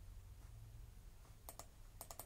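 Near silence: room tone, broken about one and a half seconds in by two quick, faint clicks from computer keys or mouse buttons.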